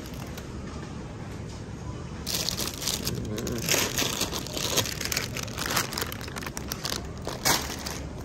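Plastic bread bags crinkling in a series of short rustles as packages are handled.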